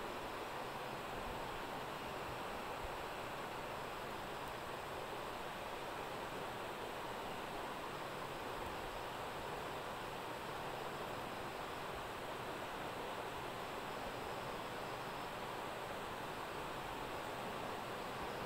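Steady, even hiss of background noise with no distinct game sounds or other events.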